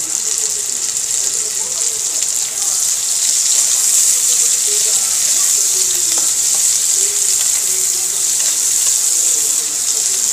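Sliced onions, garlic and ginger sizzling in hot oil in a wok; the sizzle grows louder about three seconds in.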